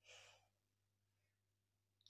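Near silence: a faint, short breath out right at the start, over a faint low steady hum.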